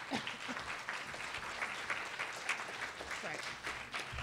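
Audience applauding steadily, with a few faint voices mixed in.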